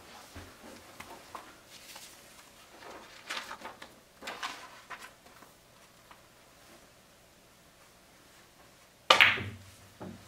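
Pool cue striking the cue ball, which at once clacks into the object ball: one sharp, loud knock near the end. Fainter rustles and soft knocks come earlier as the player settles into the shot.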